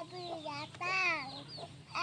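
A toddler's wordless high-pitched vocalizing: a run of short, falling cries, one after another.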